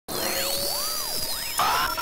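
Electronic intro sting: several tones sweep up and down in pitch in arcs over a steady high tone, ending in a brighter glitchy burst near the end.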